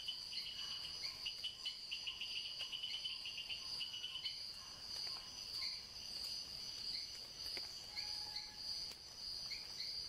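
Insects, cricket-like, singing: a steady high-pitched trill throughout, with a rapid pulsing chirp in the first few seconds and short scattered chirps after that.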